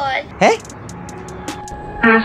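A young woman's voice: a short phrase, then one falling syllable about half a second in, followed by a lull of faint background noise and a few small clicks.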